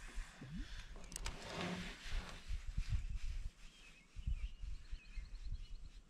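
Shimano Stratic 1000 spinning reel being cranked on a lure retrieve, with a faint quick ticking near the end, amid low knocks and bumps of handling in a kayak.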